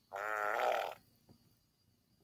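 A single fart lasting a little under a second, with a pitch that wavers as it goes.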